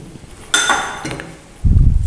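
A metal spoon clinks once against a dish or jar and rings briefly as it is put aside, followed by a dull thud near the end.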